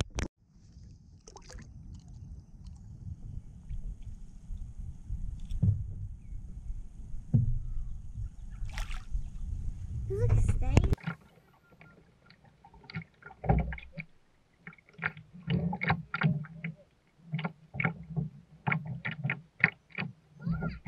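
Low rumbling wind-and-water noise on the microphone close to the water beside a kayak, lasting about the first ten seconds. After that comes a quieter run of short knocks and clicks on the kayak.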